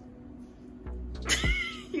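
A French bulldog puppy gives one short, high-pitched yelp about a second and a half in, over background music with a steady low drum beat.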